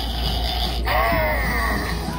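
Battery-powered Halloween haunted doorbell toy playing one of its creepy sound effects through its small speaker, with a wavering voice-like effect cutting in about a second in, for the lit Dr. Victor Frankenstein button.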